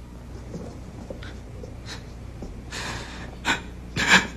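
A person's audible breathing, with a soft breath a little before three seconds in and a short, sharp breath near the end.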